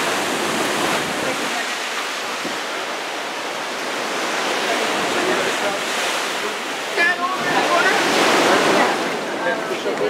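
Sea waves surging and washing through a rock arch, a continuous rush of churning water that swells twice, about halfway through and again near the end. Faint voices come through near the end.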